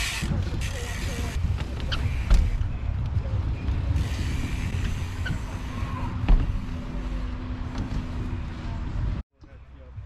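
Mountain bike rolling on skatepark concrete under a steady low rumble of wind on the microphone, with two sharp knocks from the bike hitting the obstacle, the louder one about six seconds in. The sound cuts off abruptly near the end.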